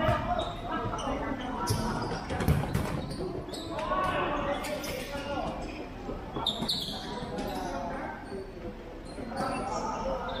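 Futsal ball being kicked and bouncing on a plastic-tile court, a few sharp thuds echoing in a large hall, with shoes squeaking on the court and players calling out.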